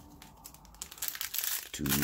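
Foil wrapper of a 2020 Donruss football card pack crinkling as it is torn open by hand, starting about a second in.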